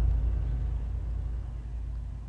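Deep, low rumble fading steadily away, the tail of a dramatic boom sound effect.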